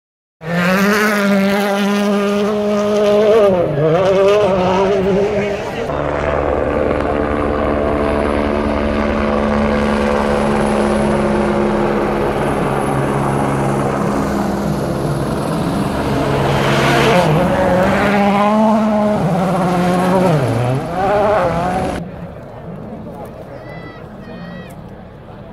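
A rally car's engine revving hard past on a gravel stage, its pitch swooping and dipping about four seconds in. Then a helicopter overhead gives a steady drone with a thin high turbine whine. Engine pitch rises and falls again before the sound drops away near the end.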